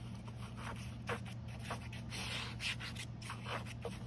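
The fine tip of a glue applicator bottle scratching along the paper edge of an envelope as a bead of glue is laid down, in several short strokes over a steady low hum.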